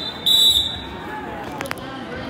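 A wrestling referee's whistle gives one short, shrill blast, stopping the action on the mat. A couple of sharp clicks follow near the end over gym crowd chatter.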